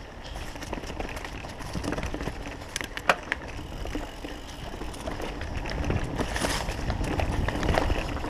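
Mountain bike riding over dirt singletrack: tyres rumbling on the trail with the bike's chain and frame rattling and a few sharp clicks, one louder knock about three seconds in. The noise grows louder toward the end as the bike picks up speed.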